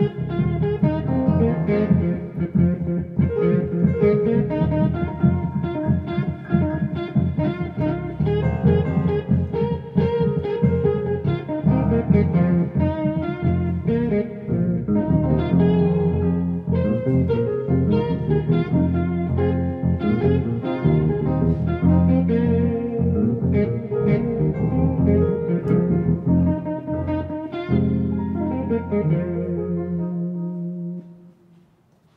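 Funk jam played on an 88-key synthesizer keyboard, with a steady bass line under busy chords and melody.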